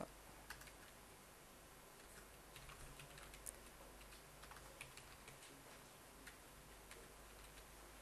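Faint computer keyboard typing: scattered, irregular keystrokes as a command is typed into a terminal, with near-silent room tone between them.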